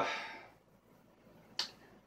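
A single short, sharp click about one and a half seconds in, after the fading end of a man's drawn-out 'uh'.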